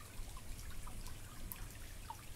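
Faint water trickling and dripping: a soft, steady hiss with a few small drips scattered through it.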